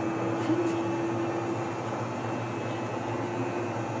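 Van de Graaff generator's motor running steadily as it drives the charging belt, a steady hum with a faint tone above it, while the dome charges up.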